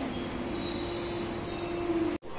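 Metro train pulling in alongside the platform: a steady whine over the rumble of the cars, with a fainter high squeal that fades out near the end.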